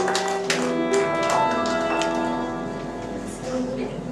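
A song with violin, piano and a singer ending live: the audience claps along in rhythm for the first half second, then a held final chord fades away toward the end.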